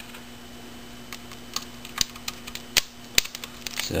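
Scattered light clicks and taps of small screws and plastic parts being handled in a plastic parts tray on a workbench, about seven sharp ticks spread irregularly, over a steady low hum.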